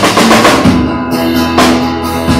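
Live band playing an instrumental passage, with the drum kit to the fore: snare and cymbal hits, a quick cluster of strokes at the start and another strong hit about one and a half seconds in, over held pitched notes from the band.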